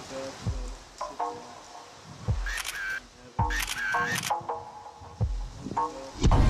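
Tense background music with deep low hits, cut by two short bursts of rapid SLR camera shutter clicks, about two and a half and four seconds in.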